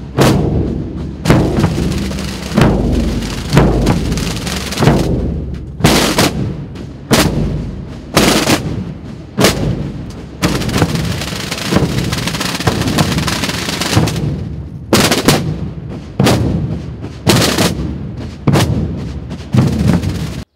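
A massed Holy Week drum corps of snare drums and bass drums (tambores and bombos) playing together: heavy unison strikes about once a second, each ringing out. A sustained roll fills the middle, from about ten to fourteen seconds in.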